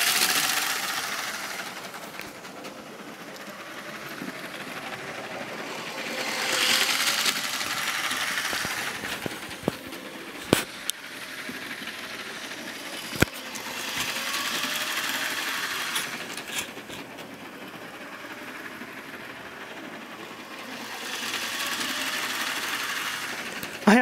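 LEGO 9-volt train motor and wheels whirring on plastic track as the subway train circles its loop. The whir swells louder about every seven or eight seconds as the train passes close by. A couple of sharp clicks sound near the middle.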